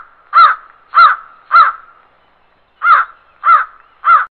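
A crow cawing: a series of short harsh caws about two-thirds of a second apart, with a pause of about a second past the middle before two more.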